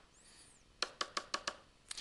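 Five quick, sharp taps of a stylus on a drawing tablet, about five a second starting near the middle, each tap putting down one dot of a dotted line.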